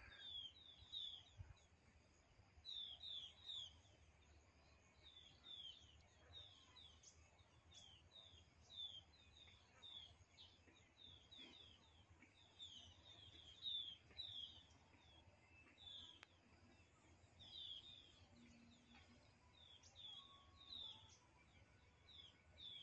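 A flock of sunbirds calling faintly: short, high chirps that fall in pitch, often in twos and threes, repeated on and off throughout.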